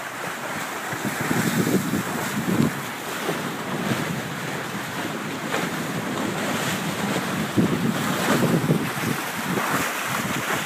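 Water rushing and splashing past the bow of a sailing trimaran moving fast under spinnaker, with wind gusting over the microphone in uneven low rumbles.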